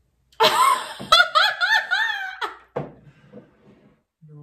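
A woman laughing: a sudden loud outburst, then a quick run of high-pitched 'ha' pulses lasting about two seconds, trailing off with a couple of short clicks.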